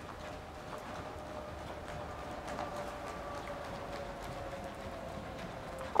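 Faint, muffled hoofbeats of a horse trotting on the sand footing of an indoor riding arena.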